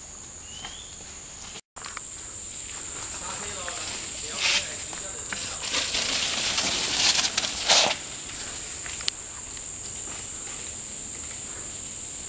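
A mountain bike coming down a rooty dirt trail, its tyres and frame rattling over the ground, loudest about six to eight seconds in with a few sharp knocks. A steady high-pitched insect drone runs underneath.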